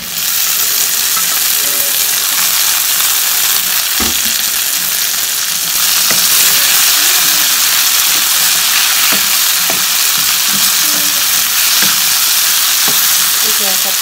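Chopped tomatoes tipped into hot oil and onions in a wok, sizzling loudly at once, then a steady sizzle as they are stirred, with a few knocks of the spatula against the pan. The sizzle grows louder about six seconds in.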